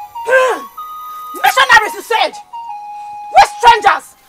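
Film background music of sustained electronic keyboard notes, one held pitch stepping to the next, under three short spoken phrases from a voice.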